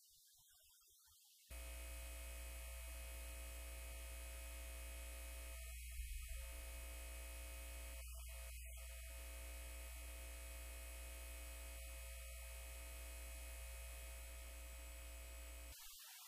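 Steady electrical mains hum with its overtones, starting abruptly about a second and a half in and stopping just before the end. A brief faint noise sounds about six seconds in.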